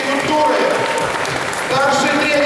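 Audience applauding, with music of long held notes playing over it.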